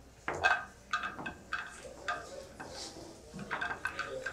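A string of sharp clacks and clicks of hard objects knocking together. The loudest comes about a quarter second in and another cluster comes near the end.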